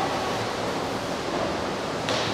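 Steady, even rush of running water with no breaks or distinct events.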